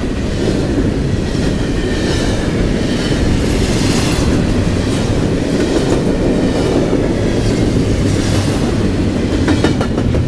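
CSX double-stack container train's well cars rolling past close by: a steady loud rumble of steel wheels on rail, with a quick run of clicks near the end.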